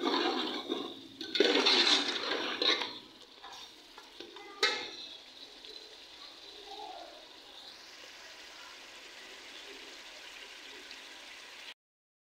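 Spiced meat frying in an aluminium pot while a steel spoon stirs and scrapes it: loud sizzling bursts with clinks over the first three seconds, a short scrape about four and a half seconds in, then a quieter steady sizzle.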